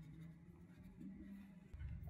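Faint scrubbing of a brush on wet cold-pressed watercolor paper, lifting paint back off. Low sustained tones lie underneath and shift pitch about a second in.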